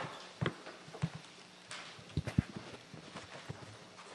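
Faint, irregular knocks and taps of people moving about a meeting room: footsteps on a hard floor and handling noise picked up by the microphones.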